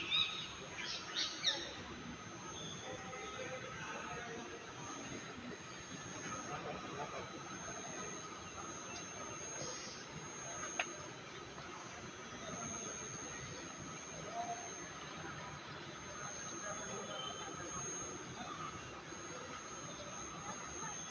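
Faint open-air background, with a few quick high bird chirps in the first second or so, then a steady low hiss.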